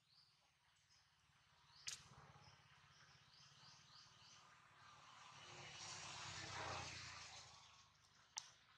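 Faint forest ambience: a bird chirping in a quick run of short notes about three seconds in, after a single sharp click near two seconds. In the second half a soft rush of noise swells and fades.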